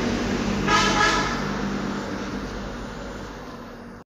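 Steady low background hum and noise, with a brief pitched tone about a second in. It fades out gradually and cuts off at the end.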